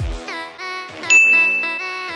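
Electronic background music with a deep falling bass hit at the start. About a second in, a single loud bell-like ding sound effect rings on steadily over the music.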